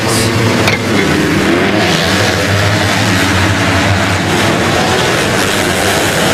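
A full field of 250cc four-stroke motocross bikes revving hard together and accelerating off the start into the first turn: a loud, dense, steady wall of engine noise.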